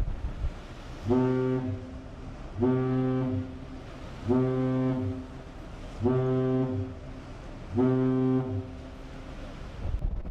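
Deep ship's horn sounding five short blasts, evenly spaced about a second and a half apart: the five-short-blast signal used between ships to warn of danger or doubt about another vessel's intentions. Low wind and sea noise runs underneath.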